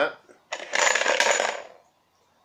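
Small numbered plastic discs clattering together inside a plastic box for about a second and a half as they are mixed for the next draw.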